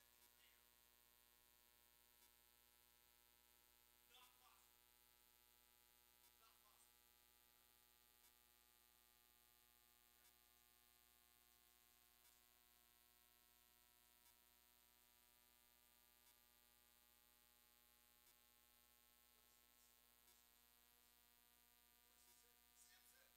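Near silence: a faint steady electrical hum of many steady tones, with a faint tick about every two seconds and faint traces of a distant voice now and then.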